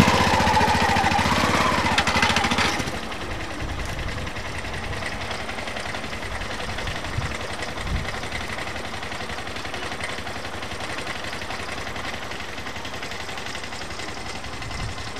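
Auto-rickshaw (tuk-tuk) engine running with a fast, even chugging. It is loud as if from inside the cab for about the first three seconds, then drops suddenly to a quieter, steady run.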